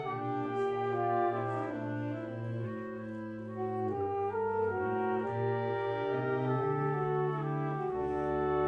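A small ensemble of wind instruments playing a slow passage in held, overlapping chords, the notes changing every half-second to second.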